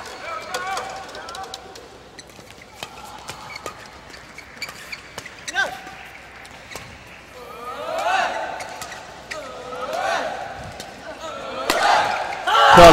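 Badminton doubles rally: rackets strike the shuttlecock again and again in an irregular run of sharp hits. Spectators' voices shout and cheer in the hall, swelling several times in the second half.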